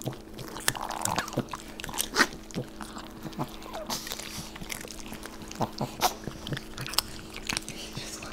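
Italian greyhounds and a chihuahua crunching and chewing popcorn, close-miked: irregular crisp crunches and mouth clicks, over a faint steady hum.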